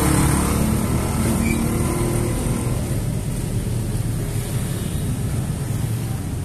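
Car engine running at idle, a steady low hum.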